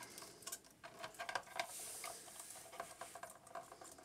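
Faint clicking and rubbing of small plastic parts as a plastic action figure is handled and posed: a scatter of light clicks, with a soft rubbing sound about two seconds in.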